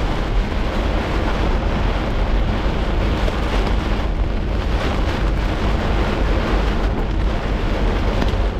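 Torrential thunderstorm rain pounding on a car's windshield and roof, a loud steady roar heard from inside the cabin, with wind buffeting the car.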